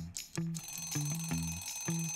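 An alarm-clock ringing sound effect starts about half a second in, a rapid high-pitched ring marking the last seconds of a countdown timer. Light background music with plucked notes plays under it.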